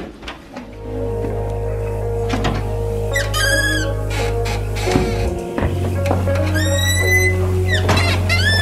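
Background music: a sustained bass line under high, arching tones that glide up and back down, twice.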